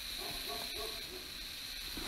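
A pause between words, filled with the recording's steady background hiss and a very faint murmur in the voice range.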